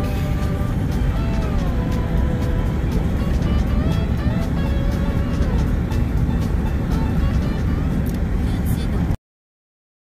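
Steady low road and engine rumble inside a moving car, under music with a voice whose pitch glides up and down. All sound cuts off suddenly about nine seconds in.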